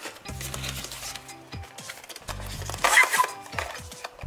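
Background music with cardboard handling: a blind box being pulled out of its cardboard display case, with a brief rustle of cardboard about three seconds in.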